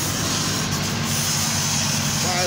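Steady machinery running nearby: a constant low hum with an even hiss over it, unchanging throughout.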